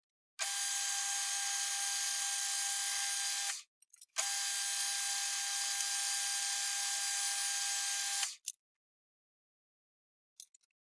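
Small metalworking lathe running with a flat file held against the spinning workpiece: a steady rasping whine in two spells of about three and four seconds, each starting and cutting off sharply.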